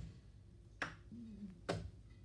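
Two sharp plastic clicks about a second apart, from Lego pieces being handled and fitted together.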